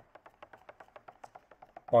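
Stirring stick tapping and scraping against the inside of a metal paint tin as car paint is mixed by hand: a quick, light, even run of taps, about ten a second.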